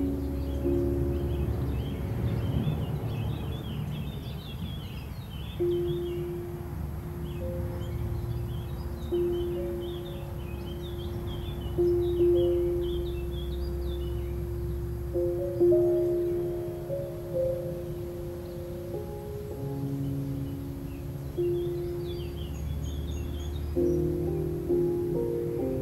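Slow classical piano music, muffled as if played in another room, with birds chirping outside and a low steady rumble of street noise beneath.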